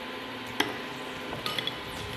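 Potato balls deep-frying in hot oil, a steady sizzle, while a wooden spatula lifts a fried ball out onto a plate: a sharp click about half a second in and a few light ringing taps about a second and a half in.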